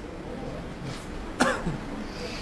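A single sharp cough about one and a half seconds in, its pitch dropping quickly, over a faint background murmur.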